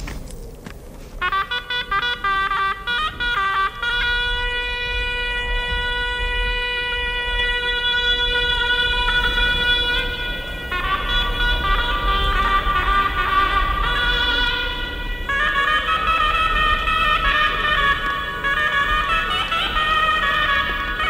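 A sorna (Persian shawm) plays a few short clipped notes, then holds one long note for about six seconds, then moves into a busier, ornamented melody.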